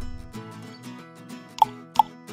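Soft background music with two short pop sound effects near the end, a quiz-animation cue for answer boxes appearing on screen.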